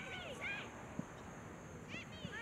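High-pitched shouted calls from voices on a soccer field, a few quick ones in the first half-second, then a single sharp knock about a second in, typical of a soccer ball being kicked.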